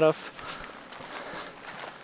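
Soft footsteps climbing a steep jungle trail of leaf litter and rocks, faint under a steady background hiss.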